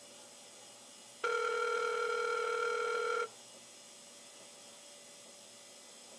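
Telephone ringback tone heard over the line: one steady ring lasting about two seconds, the signal that the call is ringing at the other end.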